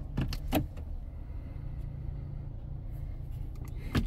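2020 Hyundai Elantra's four-cylinder engine idling, a steady low hum heard from inside the cabin. Light clicks from handling at the centre console come about a quarter and half a second in, and again at the very end.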